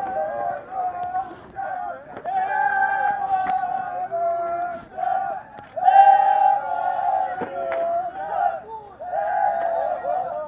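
A group of players shouting and cheering in celebration, several voices yelling in long, high, held calls, loudest about six seconds in.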